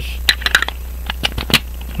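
A series of sharp clicks and clinks as a watchmaker's mainspring winder set, its loose metal arbors in their holder, is handled and set down on the bench, in two clusters about a second apart.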